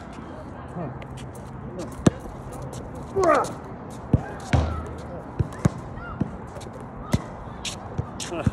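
A basketball bouncing on an outdoor hard court: one sharp bounce about two seconds in, then a string of spaced bounces in the second half. A brief vocal sound comes just after three seconds.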